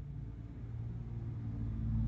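Faint low rumble, growing a little louder toward the end.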